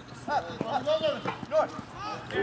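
About five short shouted calls from players, each one rising and falling in pitch, in quick succession. A few light knocks come in among them.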